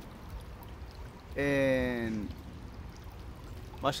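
A man's voice holding one drawn-out vowel, a hesitation sound, for about a second, falling slightly in pitch, over a steady low background rumble.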